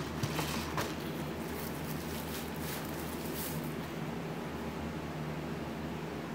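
Faint handling noise of the packaging: a few light rustles and taps as a molded pulp tray and a boxed device are moved, over a steady low hum.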